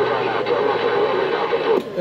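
CB radio speaker playing a noisy incoming transmission: static with a garbled, hard-to-make-out voice, cutting off abruptly near the end as the carrier drops.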